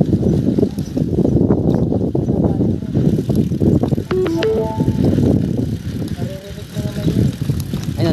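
Wind buffeting a handlebar-mounted microphone and a mountain bike rattling over a rough dirt track at riding speed: a loud, uneven rumble.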